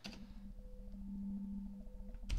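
Steady held tones over a low buzzing hum, from the soundtrack of a documentary's audio track as it plays back.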